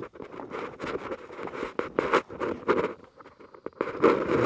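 A fabric backpack being rummaged through by hand: a run of short, irregular rustles and scrapes as its pouches and contents are handled, growing quieter about three seconds in.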